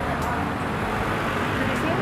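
Steady road traffic noise on a city street, with faint voices in it.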